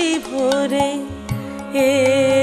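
Bengali padavali kirtan music: a held, wavering melody line over a steady drone, with strokes on khol barrel drums. The music dips in loudness midway and swells again near the end.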